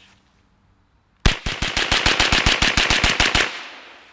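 A Sterling 9mm carbine firing a fast, even string of about twenty shots, roughly ten a second. The string starts about a second in, lasts just over two seconds, and its echo dies away after the last shot.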